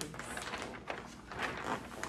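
Wrapping paper rustling and crinkling in irregular bursts as a sheet is lifted and folded around a boxed gift.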